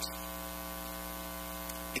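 Steady electrical mains hum, an even buzzing drone that holds unchanged.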